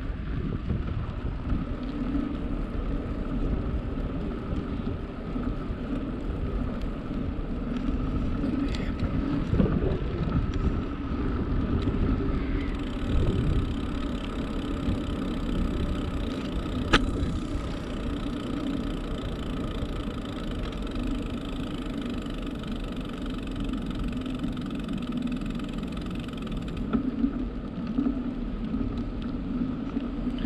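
Steady wind and tyre rumble picked up by a bicycle-mounted camera while riding on a paved trail, with one sharp click about seventeen seconds in.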